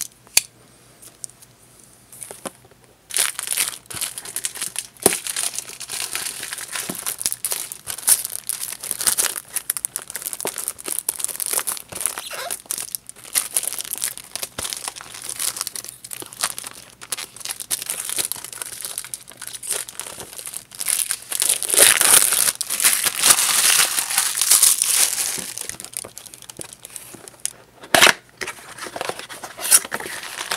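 Packaging crinkling and rustling as a boxed figure is unwrapped, with some tearing. It starts about three seconds in, grows louder past the middle, and has one sharp loud crackle near the end.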